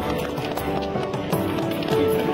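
Music playing: sustained melody notes over percussive strokes.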